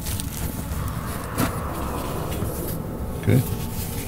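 Cardboard box set being opened and handled: soft rustling and scraping with one sharp click about a second and a half in, over a steady low rumble.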